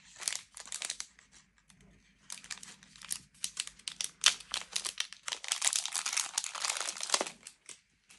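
Thin plastic packaging crinkling and crackling in the hands as a small item is unwrapped, in irregular bursts that grow thicker and busier after the first couple of seconds.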